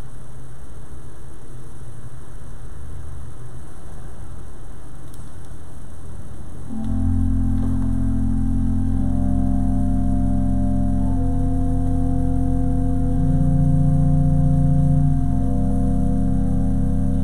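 A steady low rumble, then about seven seconds in an organ begins playing slow sustained chords, the notes changing every second or two.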